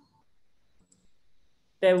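Near silence in a video call's audio between a woman's sentences, with her voice resuming near the end.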